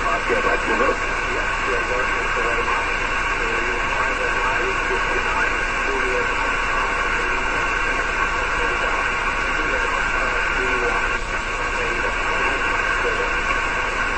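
Hiss from a 50 MHz SSB receiver with a weak, broken voice barely above the noise: the signal has faded down into the noise (QSB).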